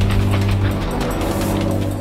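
Film trailer score: a rapid mechanical ratcheting click, laid as sound design over a sustained low tone.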